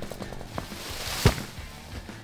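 A felled tree coming down: a rushing swish of branches through foliage that builds for about a second, then a single heavy thud as the trunk hits the ground.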